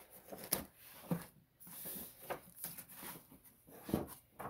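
Kraft paper wrapping being unsealed and opened by hand, rustling and crackling in short irregular bursts.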